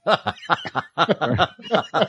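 Laughter: a run of quick chuckles, about six short pulses a second.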